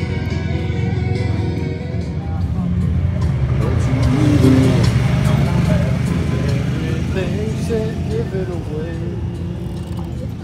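Side-by-side UTV engine running as it drives past close by, swelling to its loudest about midway, under background music and voices.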